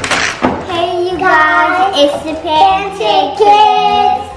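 Children's voices singing out in excited, drawn-out notes that step up and down in pitch, after a short rough burst at the very start.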